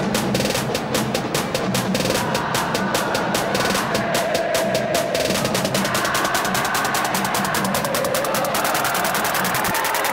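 Background music with a fast, steady percussive beat.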